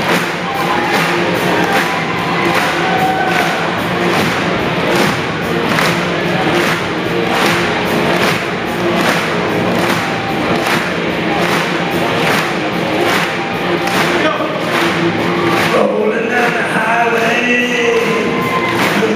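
Live band music with electric guitar over a steady drum beat, about two beats a second, with a crowd clapping along. A voice starts singing over the band near the end.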